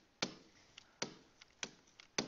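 A stylus tapping on a tablet screen while writing letters: a series of sharp ticks, roughly two a second, with fainter ones between.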